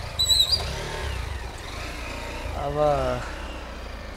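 Low, steady rumble of a motor vehicle engine in the background. A brief high chirp comes about half a second in, and a single short spoken word near the end.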